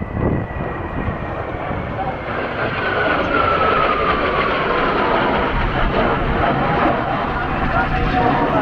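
A formation of Kawasaki T-4 jet trainers of the Blue Impulse team passing overhead. Their jet-engine roar grows louder over the first few seconds, and a whine falls in pitch as they go by.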